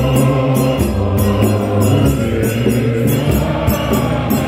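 Large men's choir singing a Sesotho Methodist hymn together in low voices, with a steady sharp beat about twice a second.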